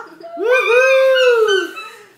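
A single long howling cry, rising in pitch, holding, then falling away over about a second and a half.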